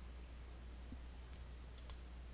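Steady low electrical hum and hiss from the recording, with a faint computer-mouse click near the end as a menu is opened.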